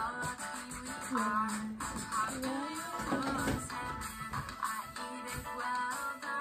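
A children's song about going fishing plays, with a sung melody over a rhythmic instrumental backing.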